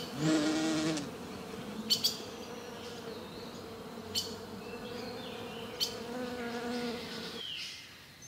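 Honeybee buzzing in a steady hum, broken by a few short sharp ticks; the buzz stops shortly before the end.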